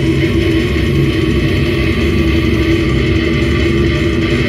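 Live slam death metal band playing: heavily distorted, down-tuned electric guitar with bass and drums in a loud, unbroken wall of sound, with guttural vocals into the microphone.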